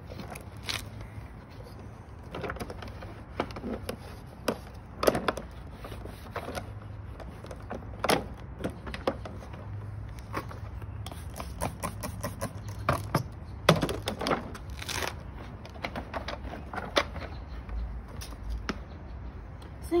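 Cloth wiping and rubbing over the plastic body of an upright vacuum cleaner during cleaning, with scattered knocks and clicks as its plastic parts are handled, over a steady low hum.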